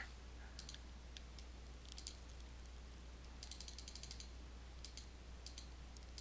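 Faint clicks from a computer mouse and keyboard being worked, scattered singly with a quick run of them about three and a half seconds in, over a low steady electrical hum.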